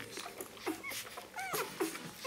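Newborn Rhodesian Ridgeback puppies squeaking and whimpering while nursing. There are a few short, high, rising-and-falling squeaks and brief lower cries.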